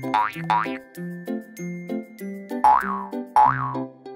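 Cheerful children's background music with plucked, stepping bass notes. Cartoon springy sound effects play over it: two quick rising glides at the start and two short up-and-down glides near the end.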